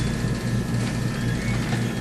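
Steady low hum with a faint even hiss: the background noise of a meeting room or its recording system.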